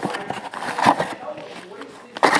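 Handling noise from a cardboard box being opened and a cloth drawstring bag being lifted out of it: rustling and scraping, with a few light knocks in the first second, growing quieter toward the end.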